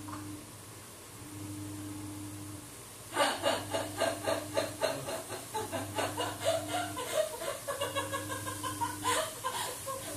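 A woman laughing hard in rapid fits from about three seconds in until shortly before the end, over a low hum that switches on and off every second or two.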